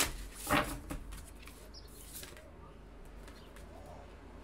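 Oracle cards being handled as one is drawn from the deck: a brief sharp rustle of card stock about half a second in, then a few faint light taps and slides.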